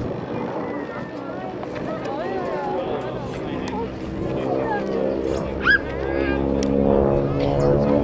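Twin Pratt & Whitney R-985 Wasp Junior radial engines of a Beech C-45 Expeditor droning overhead during a flying display pass, growing louder in the second half as the aircraft comes closer. Voices of people talking nearby are heard over it.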